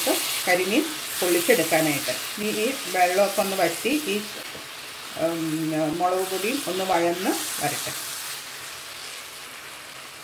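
Onion-tomato masala sizzling in a nonstick frying pan as it is stirred with a spatula. A woman talks over it for most of the time; near the end only the quieter sizzle is left.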